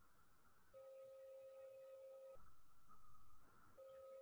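Near silence: faint room tone with a faint steady electronic tone that sounds for about a second and a half, starting about a second in, and comes back just before the end.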